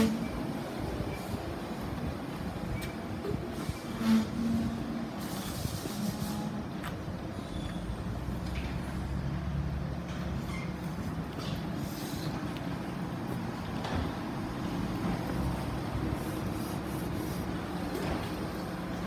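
Greater Anglia intercity train at the platform: a steady low rumble and hum, with short louder bursts near the start and about four seconds in and a few sharp clicks and knocks.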